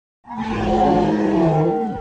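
Dragon roar sound effect: one long, growling roar that starts about a quarter second in and falls in pitch as it dies away at the end.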